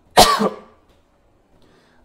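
A man's single short cough, loud and abrupt, just after the start, followed by quiet.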